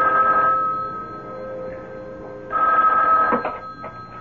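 Telephone ringing twice as a radio-drama sound effect. The second ring is cut short, followed by a few clicks as the handset is picked up.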